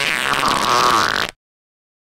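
A short, raspy, noisy sound effect that cuts off abruptly about 1.3 seconds in, followed by silence.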